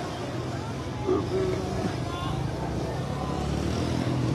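Motorcycle engine idling with a steady low hum, and a brief voice calling out about a second in.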